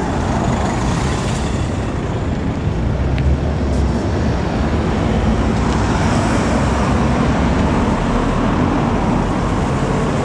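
Steady road traffic: cars driving through a street junction close by, a continuous rush of tyres and engines with a strong low rumble.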